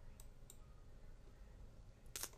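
Two faint computer mouse clicks about a third of a second apart, clicking a dialog's Save button, over near-silent room tone.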